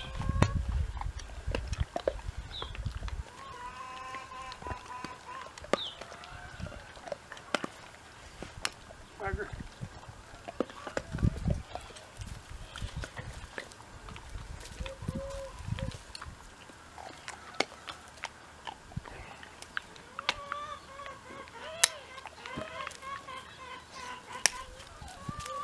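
Chickens clucking, with scattered sharp clicks and knocks of farrier's hand tools on a horse's hoof as a shoe is worked off, and a few low thumps.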